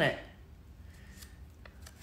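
Faint rustling of a small paper butterfly cut-out being handled in the fingers, with a few light clicks near the end.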